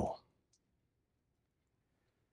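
A man's voice trails off at the very start, then near silence with a single faint, sharp click about half a second in.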